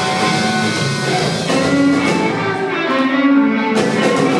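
Live rock band with an electric guitar playing a lead line of bending notes through its amp, with no vocals; a sharp hit cuts through near the end.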